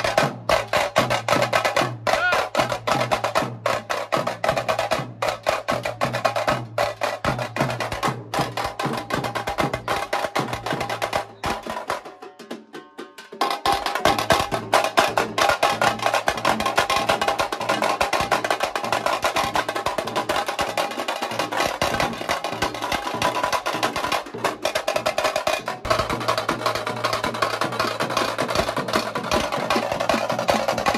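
Chatal band drumming: a fast, dense percussion rhythm with a tune over it. It breaks off briefly about halfway through, then carries on.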